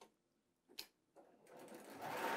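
Near silence, with two faint clicks from a sewing machine, one at the start and a sharper one just under a second in.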